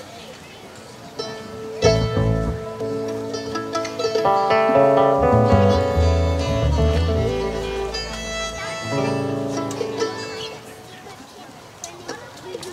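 A bluegrass band's acoustic instruments playing: fiddle, acoustic guitars, mandolin and upright bass. A single note is held at first, upright bass notes and plucked strings come in about two seconds in, the sound is fullest a few seconds later, and it thins out near the end.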